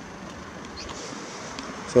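Quiet outdoor street ambience: a steady low hiss of background noise with a few faint soft ticks. A man's voice starts a word right at the end.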